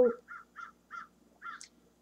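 A crow cawing faintly, a run of about five short caws spread irregularly over a second and a half.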